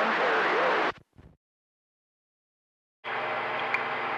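CB radio receiver hiss with a faint, garbled voice under it, cutting off abruptly about a second in as the squelch closes. After two seconds of dead silence the hiss opens again about three seconds in as another station keys up.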